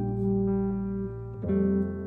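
Jazz quartet playing a slow tune on hollow-body electric guitar, piano, upright bass and drums, with sustained chords; a new chord comes in about one and a half seconds in.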